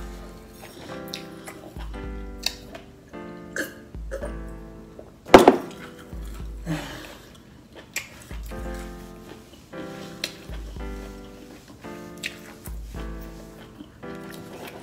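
Background music with held chords over a low bass pulse that repeats at a steady, slow beat. There is a single sharp click about five seconds in.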